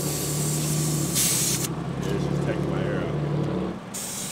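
Compressed air hissing at a car tire's valve from a gas-station air hose chuck, a loud hiss that cuts off about a second and a half in and starts again at the very end. Under it, the air machine's motor hums steadily and stops just before the end.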